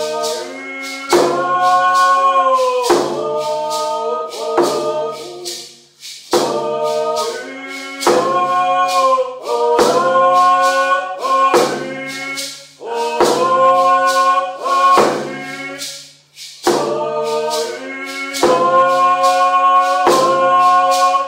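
Voices singing a paddle song, also called a travel song, in long held phrases over a steady drumbeat, with brief breaths between phrases.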